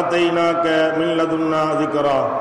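A man's voice chanting Quranic Arabic in the drawn-out melodic style of recitation, holding one long note with small shifts in pitch.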